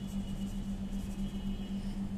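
A steady low hum of background noise, with faint squeaks of a felt-tip marker writing on paper.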